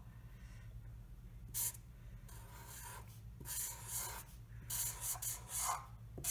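Thick felt-tip permanent marker drawing on paper: a series of short rubbing strokes, some with a faint squeak, as large letters are written.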